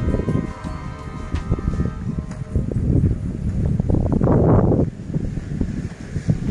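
Wind buffeting the microphone in uneven gusts, the strongest a little past the middle, with faint music in the first couple of seconds.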